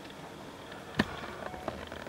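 Quiet room tone with one sharp click about a second in, followed by a few faint ticks.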